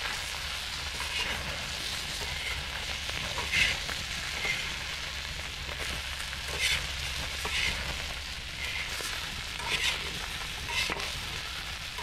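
Whole shrimp sizzling in a black steel pan over an open wood fire. A wooden spatula and a knife scrape the pan as they turn the shrimp, about once a second, the loudest stroke about three and a half seconds in.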